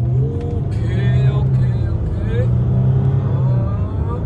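Range Rover Sport engine under hard acceleration from a near standstill, heard from inside the cabin as a loud, steady low drone that steps up and down in pitch as the car gathers speed.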